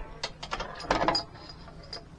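A few light clicks and knocks, bunched together about a second in.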